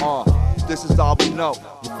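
Hip hop track: a male rapper rapping over a beat of deep bass notes and drum hits.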